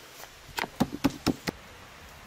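A sheet of dough is slapped down repeatedly onto a floured wooden board, about half a dozen quick dull thuds that stop about a second and a half in.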